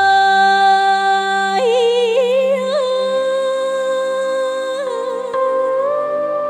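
Vietnamese folk-style music: a melody of long held notes over a steady low accompaniment, stepping up to a higher note about a second and a half in and decorated with short trills.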